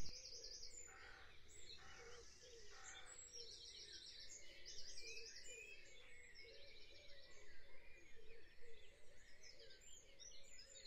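Faint dawn chorus: several birds singing, with repeated high trills and chirps.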